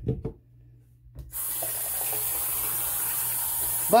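Bathroom sink faucet running: water comes on about a second in and flows steadily into the sink.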